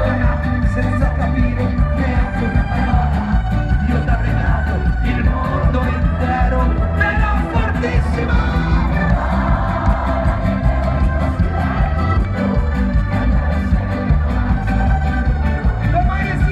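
A live rock band playing loudly, with heavy bass and drums pulsing underneath a singer's voice. Audience voices are mixed in.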